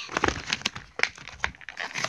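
Clear plastic blister packaging being handled, crinkling and clicking as small Tsum Tsum figures are popped out of it by hand: a run of irregular sharp crackles.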